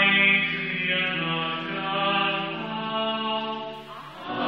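Church choir singing a slow chant in long held notes, the voices moving to new pitches together every second or so and breaking off near the end.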